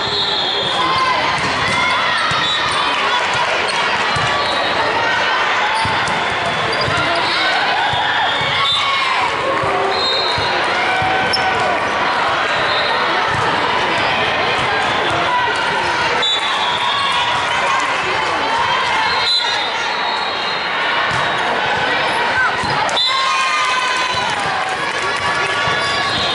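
Indoor volleyball game sound in a large sports hall: players and spectators calling and chattering throughout, with a few sharp smacks of the ball being hit.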